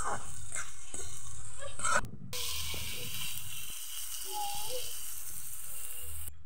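Small potatoes frying in oil in an iron karahi, sizzling as a ladle stirs and scrapes through them. About two seconds in it cuts to a steadier hiss from the lidded pan cooking over a wood fire.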